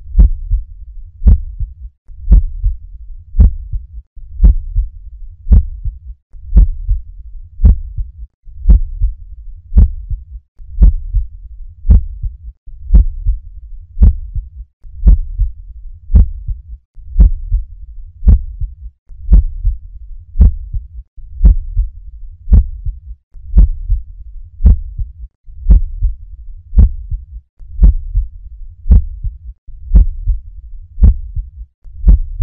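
Recording of normal human heart sounds, S1 and S2: a steady lub-dub at about one beat a second.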